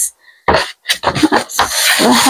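Scratchy rubbing and rustling from things being handled and moved around close to the microphone, starting about half a second in and thickening near the end.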